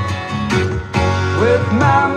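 A recorded country-pop song playing, with guitar and band accompaniment. A sung note slides up about a second and a half in.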